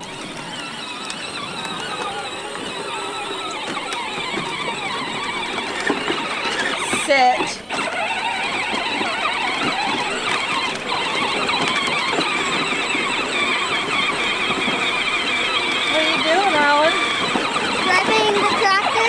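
Battery-powered John Deere ride-on toy tractor driving along a bumpy dirt path, its electric motors and plastic gearbox giving a continuous wavering whine. A child's voice is heard briefly about seven seconds in and again near the end.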